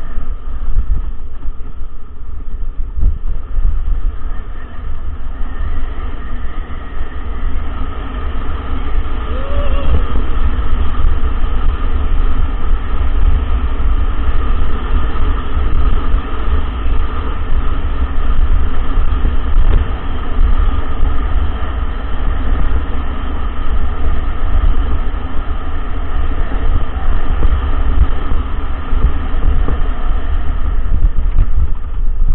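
Loud, steady rumble of wind buffeting a body-mounted action camera's microphone, mixed with the rattle of a mountain bike running fast down a rough dirt track.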